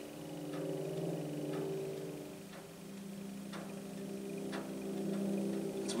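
Tense background music: a held low chord that changes pitch about two seconds in, under a clock-like tick about once a second.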